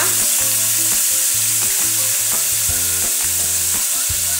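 Beef rib pieces sizzling in hot oil in a pressure-cooker pot, a steady frying hiss.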